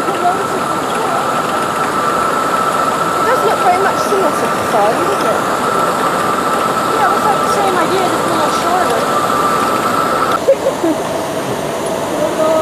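Lift mechanism of a Mack water coaster running with a steady high whine as a boat car climbs past close by, over faint background voices; the whine cuts off abruptly a little before the end.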